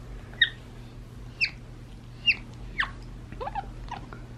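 A capuchin monkey giving about four short high-pitched chirps, each sliding quickly downward, spaced roughly a second apart. A few softer, lower squeaks follow near the end.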